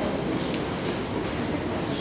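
Steady background noise of a large hall, an even hiss and rumble with no speech or distinct events.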